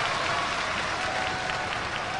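Wrestling arena crowd clapping and cheering, a steady wash of noise, during a pinfall count.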